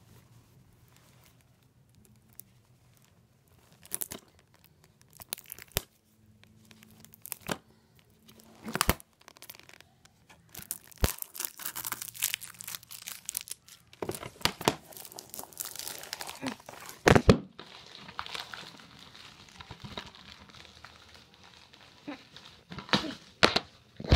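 Plastic shrink wrap being torn and crinkled off a sealed DVD case: a few sparse clicks and crackles at first, then dense crinkling and tearing through the second half, with one loud crackle a little past the middle.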